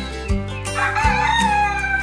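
A rooster crowing once, one long call starting a little under a second in, over background music.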